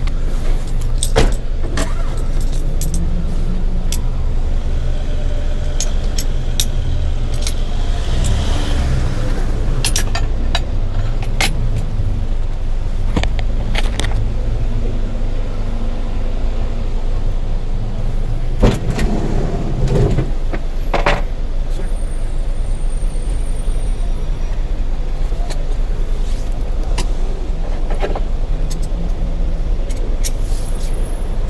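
Taxi engine idling, heard from inside the cabin, with scattered clicks and knocks as the wheelchair passenger is strapped in, and a louder clatter about two-thirds of the way through.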